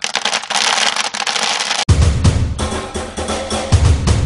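Wood pellets rattling and pouring out of a pellet grill hopper's cleanout door into a plastic bucket as a hand pushes them out. About halfway through, this cuts off suddenly and music with a drum beat takes over.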